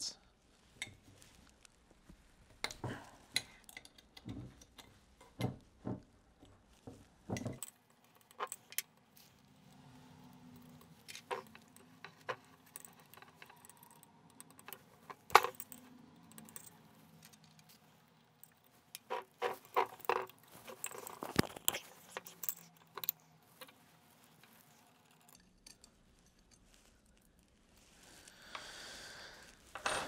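Scattered light metallic clicks and clinks of an Allen wrench working the Allen head bolts on a stainless-steel helical pump body, with one sharper click about halfway through.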